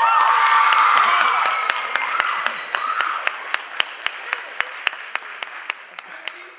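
Theatre audience applauding, with whoops near the start. The applause is loudest in the first couple of seconds, then dies away to a few separate claps, about four a second.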